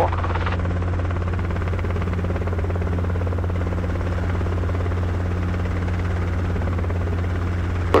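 Steady low drone of a Robinson R22 helicopter's engine and rotors heard inside the cabin, unbroken while the helicopter slows on its approach to land.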